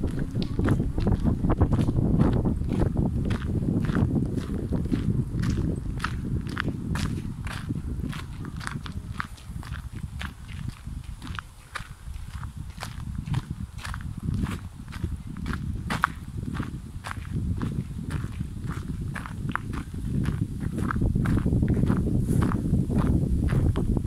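Footsteps of a person walking on a gravel path at a steady pace, about two steps a second. A low rumble runs underneath and weakens for a few seconds midway.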